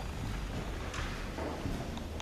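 Room noise in a pause between speech: a steady low hum under a faint even hiss, with one light tap about a second in.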